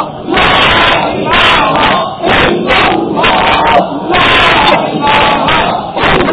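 A male preacher speaking in a loud, forceful, near-shouting voice, in phrases about a second long with short breaks between them.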